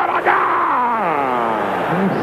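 A man's voice holds one long cry whose pitch slowly falls. It is a football commentator's drawn-out exclamation as a shot nearly goes in.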